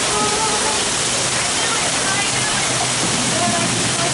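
Heavy rain pouring down in a steady, loud hiss, with faint voices underneath.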